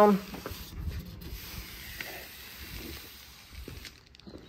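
A hand rubbing and pressing along the vinyl edge of a roll-up tonneau cover, sticking its velcro strip down onto the pickup's bed rail: a soft, steady rubbing with a few faint clicks.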